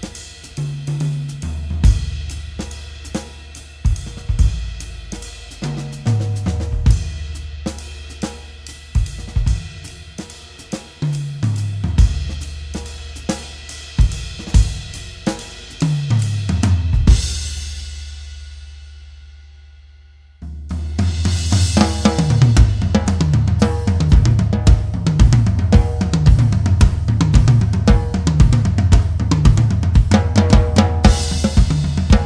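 Zebra Drums Free Floating five-piece kit with London plane shells and Meinl Byzance cymbals, played in a groove with tom fills about every five seconds. About 17 s in a final hit rings out and fades for about three seconds. Then a louder, busier groove starts.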